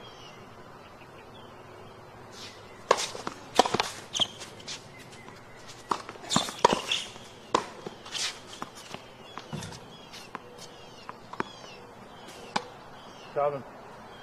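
A tennis rally: racquets striking the ball and the ball bouncing, a string of sharp knocks about half a second to a second apart beginning about three seconds in, with small birds chirping behind. A short voice near the end.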